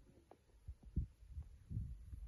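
Low, irregular thumps and rumble on the microphone, growing louder near the end.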